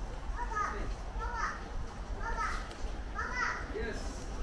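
A young child's voice, four short high-pitched calls about a second apart, over a steady low rumble.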